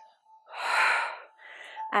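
A woman's loud breath, one breathy rush lasting under a second about half a second in, followed by a fainter breath, as she rises out of a squat during a vigorous workout.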